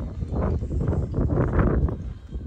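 Footsteps on a stone-paved lane, irregular thuds with a low rumble of wind on the microphone.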